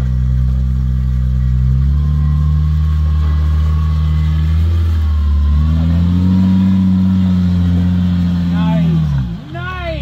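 Jeep Wrangler Rubicon's V6 engine pulling steadily at low revs as it crawls through a rutted mud hole, the note rising a little past the middle. Near the end it revs up and down in a couple of quick throttle blips.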